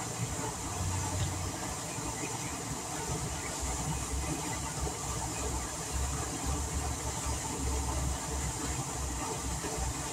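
Lake fountain jet shooting up and falling back into the water, a steady hiss of spray and splash, with irregular wind rumble on the microphone.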